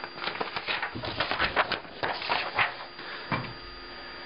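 Sheets of paper being handled and swapped on a table: a run of irregular rustles and scrapes lasting about three and a half seconds, then only a faint steady hum.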